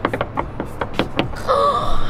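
A quick, uneven run of sharp knocks and bangs, hands slapping at a window and the sofa beside it, over the first second or so; then a girl's held, excited vocal sound starts near the end.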